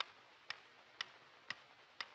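Wooden pyramid-shaped pendulum metronome ticking steadily, two ticks a second.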